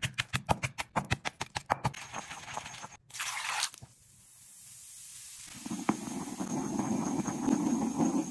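Stone pestle pounding pink bath bomb chunks in a stone mortar, about five quick strikes a second that thin out over the first two and a half seconds. After a short splash as water goes in, the bath bomb fizzes with a faint hiss, and from about five and a half seconds the pestle churns and swirls through the fizzing liquid.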